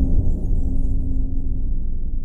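Outro logo sting: the low rumbling boom of a deep hit dying away slowly, with a steady low tone that fades out near the end.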